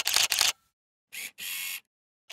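Camera shutter sound effect: a rapid burst of SLR shutter clicks, about six or seven a second, that stops half a second in. After a pause come two more shutter sounds, the second one longer.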